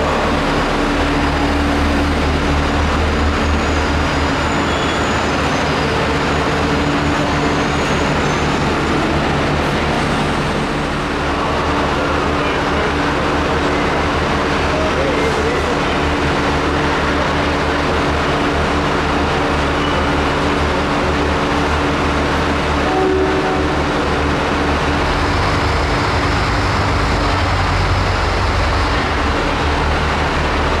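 Trains standing and moving at a station platform, giving a steady, loud mechanical drone with a low rumble that holds through.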